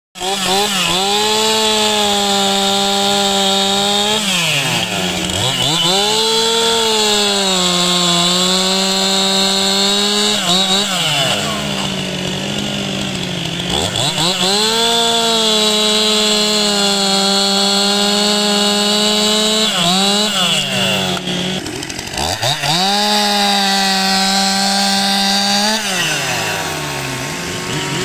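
Stihl MS261 two-stroke chainsaw revved at full throttle without cutting, held at a high steady pitch for several seconds at a time. About five times the throttle is let off, the engine speed drops sharply and climbs straight back up.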